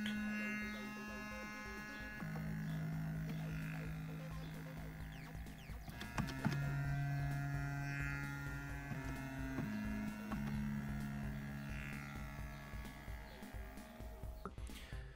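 Donner B-1 analog bass synthesizer running a sequenced pattern of long held, buzzy notes without slides. Each note sustains for two to four seconds before stepping to a new pitch, sometimes with two pitches sounding together.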